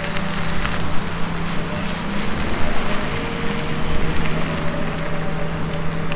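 Wind buffeting the microphone as a steady rush and rumble, with a faint low hum running underneath.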